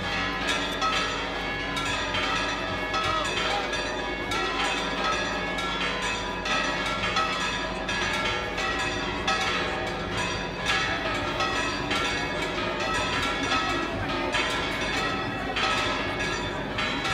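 Church bells ringing a continuous peal, with many quick overlapping strokes that run together without a break.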